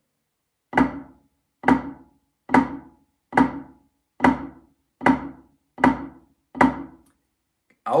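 Wooden drumsticks playing flams on a rubber practice pad, alternating hands: eight evenly spaced strokes, a little under a second apart.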